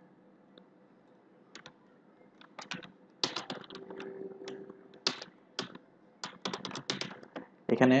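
Computer keyboard keystrokes in several short bursts of clicks, starting about a second and a half in.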